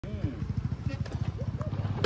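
Single-cylinder dirt bike engine chugging at low revs under load as the bike climbs a dirt bank, a rapid, even train of low thumps. A brief voice-like call sounds near the start.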